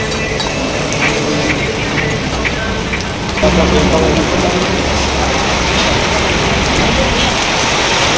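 Heavy rain pouring down in a storm. It grows louder about three and a half seconds in, with a low rumble added for a couple of seconds.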